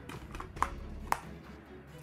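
Plastic Blu-ray case snapped shut and handled: a few sharp clicks, the strongest about a second in.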